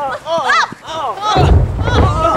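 Children's high-pitched voices shouting and squealing in short bursts, with wind buffeting the microphone as a low rumble from about two-thirds of the way in.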